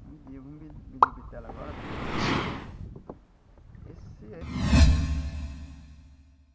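Water splashing and plopping as a peacock bass held on a lip grip is moved through the water to revive it before release. Two swelling rushes of water sound, the louder about five seconds in.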